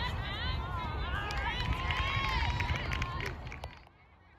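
Several voices shouting and calling out over one another across a soccer field during play, over a low rumble. The sound cuts off sharply near the end.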